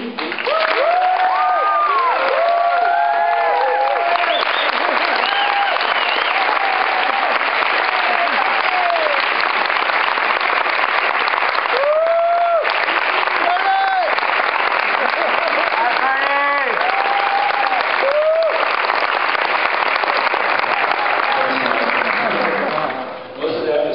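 A large audience applauding and cheering loudly, with steady dense clapping and many whoops and shouts rising and falling over it.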